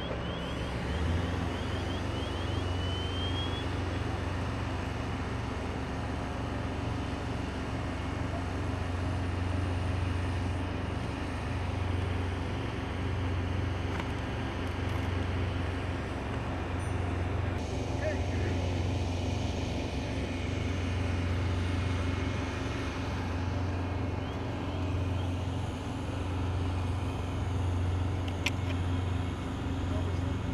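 Steady low drone of an idling vehicle engine. In the first three seconds, a run of short high chirps ends in a rising tone.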